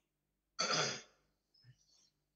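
A person clears their throat once, a short rasping burst about half a second in, followed by a faint brief sound near the end.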